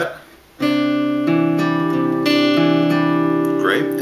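Steel-string acoustic guitar fingerpicked in a Travis pattern on a C major chord. The thumb alternates bass notes while a melody D on the second string, third fret, rings over them and the notes sustain into each other. The playing starts about half a second in.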